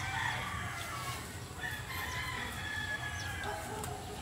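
Chickens calling faintly, with several drawn-out crowing calls from a rooster, over a low steady background.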